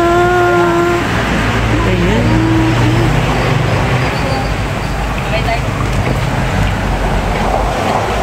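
A woman's long drawn-out shout, held on one note, ends about a second in. A steady low rumble of vehicle traffic follows, with a few faint voices.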